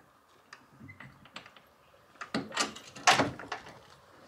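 Metal catches on a horsebox's rear door being unfastened: a few light clicks, then a cluster of louder clanks and rattles from just past two seconds in, the loudest about three seconds in.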